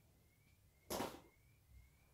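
Mostly near silence, with one brief soft swish about a second in.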